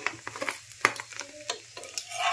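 Steel flat spatula scraping against a non-stick tawa to loosen a dosa, a few sharp scrapes over a light frying sizzle.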